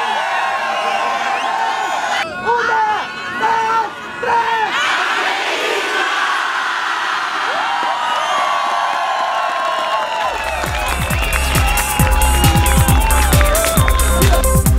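A large crowd cheering and shouting together, with a loud stretch of shouting in unison about two seconds in that swells into a long cheer. About ten seconds in, electronic dance music with a heavy steady beat starts and takes over.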